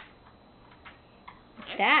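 A few faint light clicks, then a short spoken word, "that", near the end, the loudest sound.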